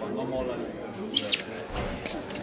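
Indistinct voices in the background, with two short, sharp high squeaks a little over a second in.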